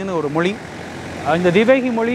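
A man talking in Tamil, with a pause of under a second near the middle.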